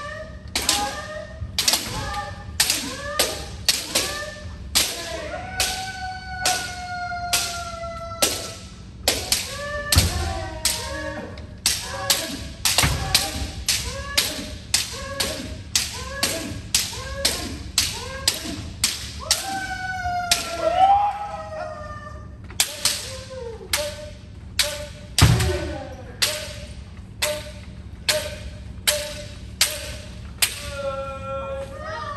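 Bamboo shinai cracking on kendo helmets in rapid succession, about two sharp strikes a second, in kirikaeshi drills where alternating left and right head strikes land unblocked. Long drawn-out kiai shouts rise over the strikes, and a few heavy thuds of stamping feet sound on the wooden floor.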